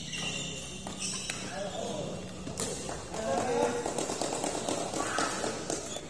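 Badminton racket strings striking a shuttlecock with a few sharp cracks in the first half, during a doubles rally in a large hall. Voices call out over the later part.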